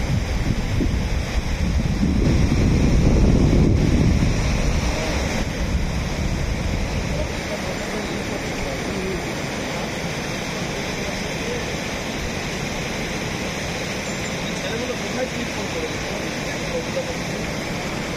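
Water rushing through a weir's open sluice gates and churning over the concrete apron, a steady even wash of noise. Wind buffets the microphone for the first several seconds, loudest about two to four seconds in, then dies away and leaves the water alone.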